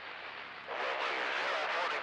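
CB radio receiver hissing with open-channel static, then about three-quarters of a second in a distant station's voice comes in over the speaker.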